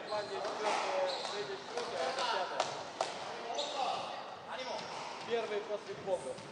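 Squash ball being struck and hitting the court walls: several sharp knocks at irregular spacing, with voices in the hall.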